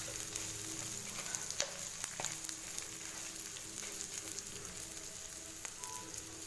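Sliced onions and dried red chillies sizzling steadily in hot oil in a non-stick frying pan, stirred with a wooden spatula at first. A couple of faint clicks sound about two seconds in.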